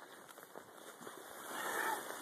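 Faint rustling and scuffing of dry brush and dirt underfoot as a person walks through roadside scrub, swelling to a louder rustle near the end.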